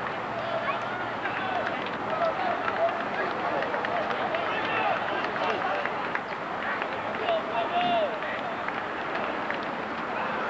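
Crowd noise of many voices talking and shouting over one another, with scattered calls and yells rising above the babble; no single voice stands out.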